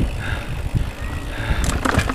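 Mountain bike riding fast down a dirt singletrack: tyres rumbling over the trail, with irregular knocks and rattles from the bike and a few sharp clicks near the end.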